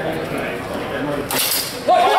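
Steel longsword blades clashing: one sharp metallic clink a little over a second in, with a bright ring and a few lighter clicks after it.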